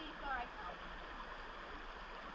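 Faint, steady rush of river water flowing, with a brief distant child's voice in the first half second.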